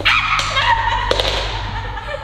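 A plastic broomstick is knocked off the buckets and clatters onto the wooden floor, heard as several sharp knocks. Over it comes a loud, high, wavering yelp-like sound that stops suddenly, with background music under it all.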